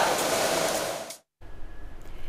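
Steady rushing background noise in a cattle shed that cuts off abruptly about a second in, followed by faint room tone.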